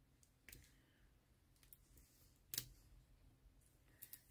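Near silence with a few faint, short clicks, the loudest about two and a half seconds in: a fingertip and nail tapping and pressing on the plastic film covering a diamond painting canvas.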